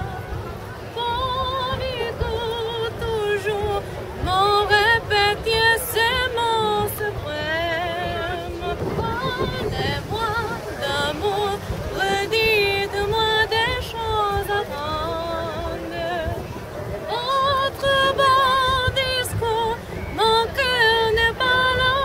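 A woman's high singing voice with a wide, steady vibrato, heard as a song over a low background rumble.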